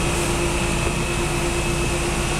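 Fire-truck engines and water-cannon pumps running steadily: a continuous rushing noise with a steady whine running through it.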